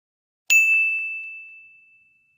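A single bell-like ding sound effect, struck about half a second in and ringing on one high tone that fades away over about a second and a half.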